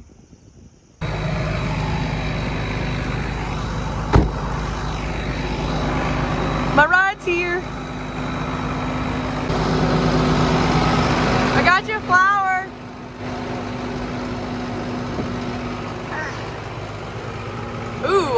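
John Deere 7410 tractor's diesel engine idling steadily up close, starting about a second in, with a sharp thump about four seconds in. The engine sound grows quieter after about thirteen seconds.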